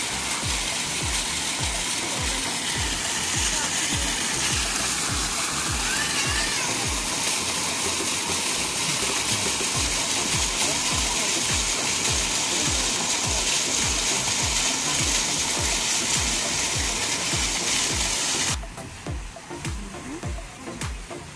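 Bubbler fountain jets gushing and splashing in a steady rush, over background music with a steady low beat. The water sound cuts off suddenly near the end while the beat goes on.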